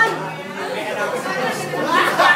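Chatter of several people talking at once in a room, with a low steady hum underneath.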